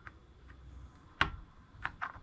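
A few light, sharp ticks of a small metal rod against the plastic face of a 250 A molded-case circuit breaker as it is pushed into the recessed trip button. There are three ticks, the middle one the loudest; the breaker has not yet tripped.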